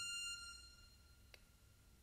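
A held piano note dying away in the first half-second, then near silence broken by one faint click.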